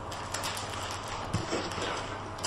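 Steady background hiss with a few scattered light clicks and a short soft knock a little over a second in.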